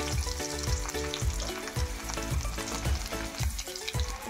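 Crushed garlic sizzling and frying in hot coconut oil with mustard seeds in an aluminium kadai, a steady crackling hiss, under background music with a steady beat.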